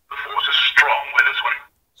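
A talking Darth Vader keychain plush's sound chip, set off by a press on its belly, plays a recorded voice phrase through its tiny speaker for about a second and a half. It sounds thin and telephone-like, with no highs.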